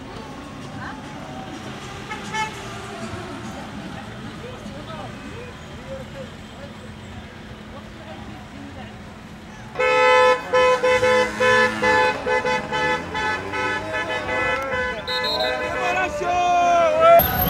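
Street noise of a slow-moving line of cars with voices, then, about ten seconds in, car horns honking loudly in repeated short blasts, several horns at once, as celebratory honking.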